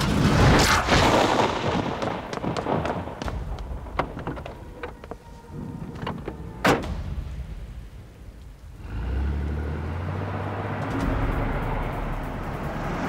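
Film soundtrack: knocks and clatter of objects hitting a hard floor in the first second or two, a single sharp knock about seven seconds in, then, from about nine seconds, the steady low rumble of a truck engine.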